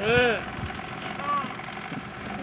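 Short cooing voice sounds: one arching coo at the start and a brief one just past the middle, over a steady low hum.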